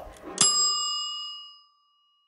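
A single bell ding, struck once about half a second in, its clear high ringing fading away over about a second.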